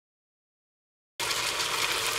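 Silence, then about a second in a pan of hassar curry starts up abruptly with a steady sizzling hiss of frying.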